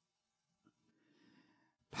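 Near silence: room tone in a pause of a man's speech, with a faint intake of breath in the second half.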